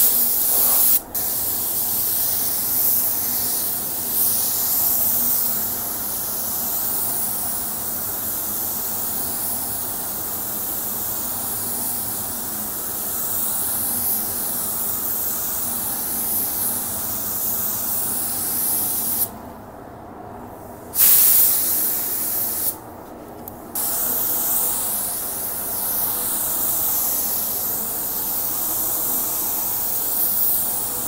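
Compressed-air paint spray gun with a 1.3 mm nozzle spraying HS clear coat thinned 10%, a steady hiss of air and atomised lacquer. The trigger is let off briefly twice about two-thirds of the way through, the hiss dropping away and then coming back.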